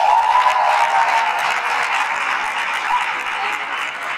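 A crowd of students applauding and cheering, with a few voices calling out over the clapping early on. The noise eases a little near the end.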